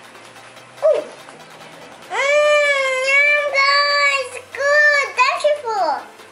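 A child's voice holds a long level note for about two seconds, then a shorter note, then a note that falls away in pitch.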